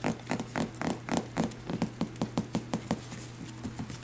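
Cavapoo puppies' toenails clicking on a tiled floor as they walk and scuffle, a quick, uneven run of light clicks.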